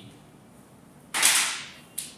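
Whiteboard marker writing: one loud stroke just after a second in that fades over about half a second, then a short tap near the end.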